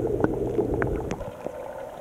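Water gurgling and trickling in a koi tank, with a few small clicks. A low hum underneath fades out about a second in, and the sound gets quieter.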